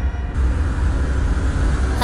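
Auto-rickshaw engine running with a heavy, steady low rumble and road hiss; the hiss comes in about a third of a second in, as the score fades out.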